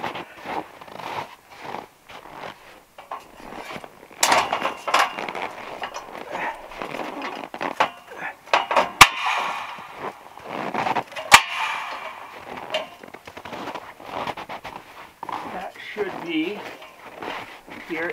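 Knocks and clatter from a steel scaffold frame being moved and pinned into its adjustment holes. Two sharp metallic clacks, about two seconds apart in the middle, are the loudest sounds.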